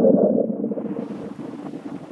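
Pause in an amplified talk: the last spoken word's echo dies away over about a second in a large reverberant hall, leaving a steady hiss of room noise.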